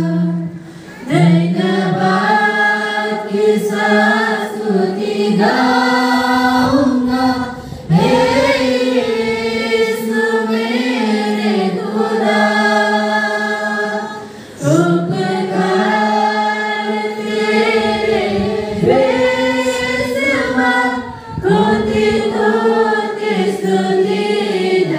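Mixed group of young voices singing a Hindi Christian worship song together, with a woman's voice leading on a microphone. The song comes in long sung phrases with a short breath between them about every six or seven seconds.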